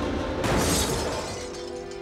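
A sudden crash about half a second in, fading over the following half second, over background music that settles into held notes near the end.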